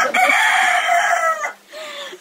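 Rooster crowing loudly: one long held call of about a second and a half that drops slightly in pitch before cutting off.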